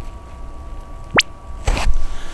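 JBL Everest Elite 700 headphone driver playing its self-calibration chirp: a single very fast sweep rising from low to high pitch, a fraction of a second long, about a second in. It is the frequency-response sweep that the earcup's internal feedback microphone listens to so the headphone can EQ the sound in the cup.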